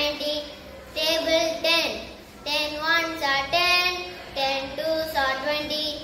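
A young boy singing a multiplication-table song, in short sung phrases with brief pauses between them.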